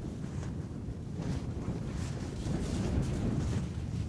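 Wind buffeting the microphone as a steady low rumble, with irregular crunching footsteps in snow from about a second in.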